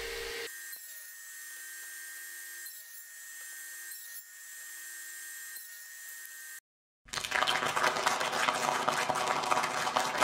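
Table saw running and crosscutting old hardwood fence palings. It starts as a fairly quiet steady whine; after a brief total dropout about seven seconds in, a louder rough, rasping cutting noise takes over.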